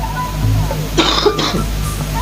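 A short cough about a second in, over a steady low hum.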